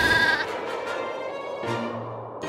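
A cartoon goat bleating briefly at the start, over background music.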